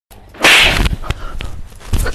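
A single short, sharp whoosh about half a second in, a swish-like transition sound effect at the cut between two clips, followed by a quieter stretch with a few faint clicks.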